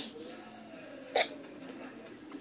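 A single short, sharp sound from a person's mouth or throat about a second in, against a quiet room.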